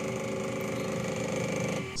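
Creality Ender 3 3D printer running: a steady mechanical buzz from its stepper motors and fans, holding one pitch throughout, cutting off near the end.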